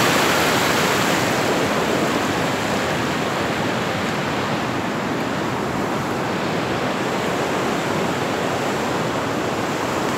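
Floodwater from an overflowing creek rushing across a paved road and churning over its edge: a steady, loud rush of water.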